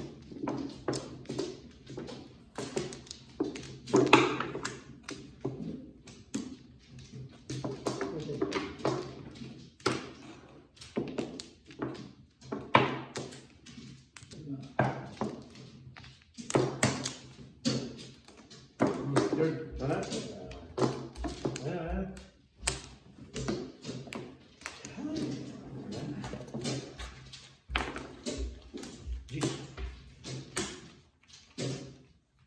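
Mahjong tiles clicking and clacking, many short irregular knocks as players draw, discard and arrange tiles on the mat-covered table, with talk alongside.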